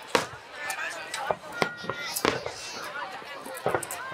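Aerial firework shells bursting in a string of sharp bangs, about five in four seconds, the loudest right at the start, over a crowd of people talking.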